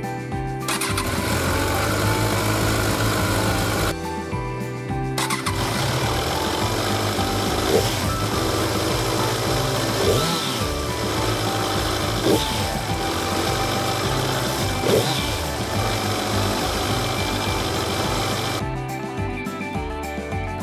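Kawasaki Z1000's inline-four engine running, breaking off for about a second early on and then resuming, with four short throttle blips, over background music.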